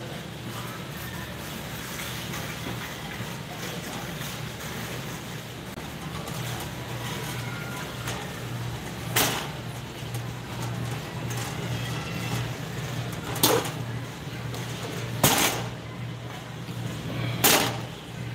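Steady hum of a large warehouse store while a shopping cart is pushed along, with four short sharp clatters in the second half.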